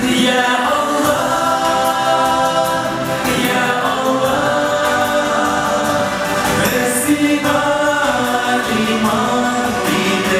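Two male voices singing a Tatar nasheed together into microphones, moving through long held notes, amplified over a hall's PA.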